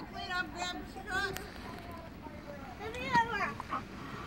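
Faint, indistinct voices talking, among them a child's high voice.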